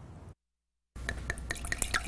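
Red wine being poured into a stemmed wine glass: a thin stream splashing and trickling with quick drip-like ticks. It starts about halfway through, after a brief stretch of dead silence.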